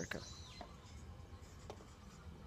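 A pause between words: faint, steady low background rumble, with two soft clicks, one about half a second in and one near the end.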